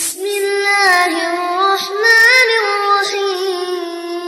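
A child's voice reciting the Quran in a melodic murottal chant, with ornamented turns in pitch that settle into one long held note near the end.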